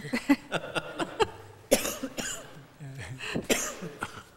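Several people laughing in short, irregular bursts, mixed with coughing; the two loudest bursts come about halfway through and near the end.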